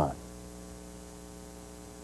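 Steady mains hum on an off-air VHS recording: a low buzz with a stack of evenly spaced overtones over faint hiss.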